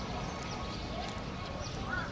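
Visitors' voices murmuring, with a couple of short rising-and-falling calls about a second in and near the end.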